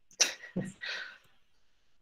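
A man's short breathy laugh, three quick puffs of breath in the first second.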